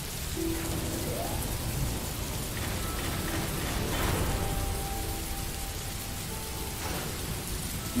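Steady rain falling, an even wash of drops with a deep low rumble underneath.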